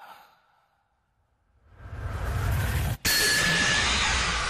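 Film sound effect of a surge of energy: a rising rush of noise with a deep rumble swells up, cuts out for an instant about three seconds in, then comes back as a loud burst with a few ringing tones, matching a blinding flash of light. A brief, soft breath-like sound comes first, followed by about a second of near silence.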